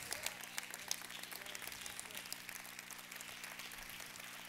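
Congregation applauding: many hands clapping at a moderate level.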